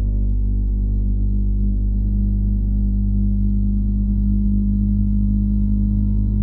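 Outdoor unit of a Panasonic 2.5 kW mini-split heat pump running with a steady, pitched hum and a faint high whine, just after its defrost cycle has finished.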